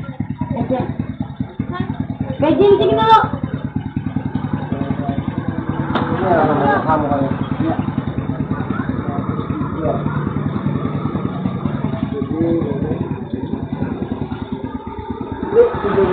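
A motorcycle engine idling steadily close by, its low, even pulsing running under snatches of people talking, heard through a CCTV camera's microphone.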